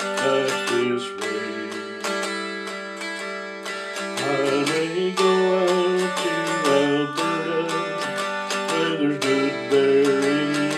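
Homemade walnut mountain dulcimer played with regular picked strokes, a melody line ringing over a steady low drone.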